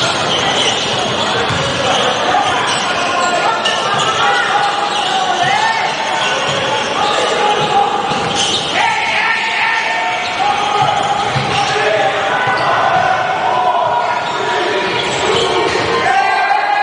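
A basketball being dribbled on a hardwood gym floor during live play, repeated bounces under players and spectators calling out.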